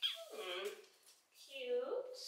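Wordless vocal sounds from a woman: a short exclamation that starts high and glides down, then a second, steadier vocal sound near the end.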